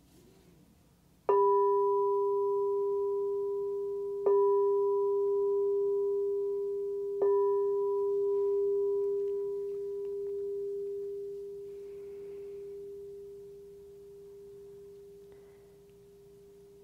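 A meditation singing bowl struck three times, about three seconds apart. Each strike rings on in a steady low tone with fainter higher overtones, and the sound slowly fades after the last strike. The strikes mark the opening of the meditation.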